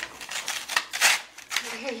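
Paper crinkling and rustling in a quick run of short scrapes as a toddler handles a greeting card and its envelope, loudest about a second in.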